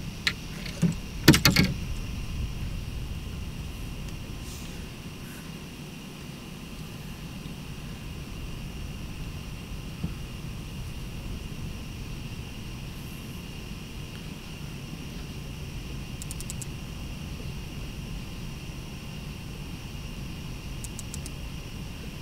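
Steady night ambience aboard a small fishing boat: a continuous low rumble with a steady high-pitched chorus over it. A few sharp knocks of gear against the boat come in the first two seconds, the loudest sounds here.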